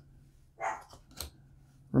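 A dog barking twice in the background: one short bark about half a second in, a shorter one about a second later.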